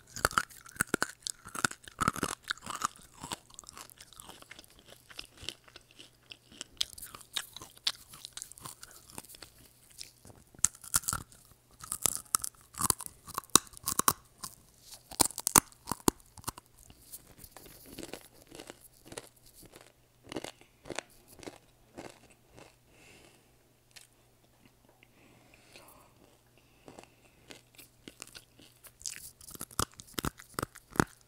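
Close-miked eating sounds: irregular crunches and chewing clicks, picked up by an earphone microphone held at the mouth.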